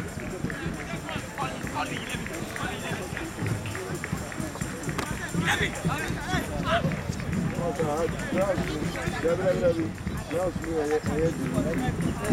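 Indistinct shouts and calls from footballers and onlookers on the pitch, with several voices overlapping. The calling grows denser and louder in the second half.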